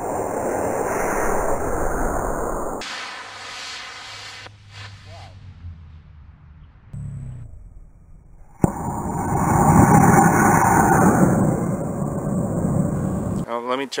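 Two-stage model rocket on black-powder motors (D12-0 booster with an A8-3 upper stage) lifting off with a loud rushing roar lasting about three seconds. The same launch is heard again about eight and a half seconds in: a sharp ignition pop, then about five seconds of loud roar.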